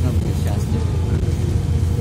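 Steady low drone of a Mercedes-Benz O530 Citaro city bus, heard from inside its passenger cabin as it moves along in traffic.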